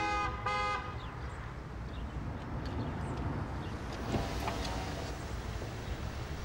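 Car horn beeping twice in quick succession, two short toots. Then a low, steady car and traffic noise.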